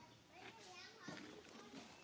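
Faint, high-pitched, wavering voice-like calls, rising and falling in pitch over about a second.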